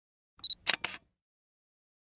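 Channel-intro sound effect: a short high beep, then two quick clicks in close succession, all within the first second.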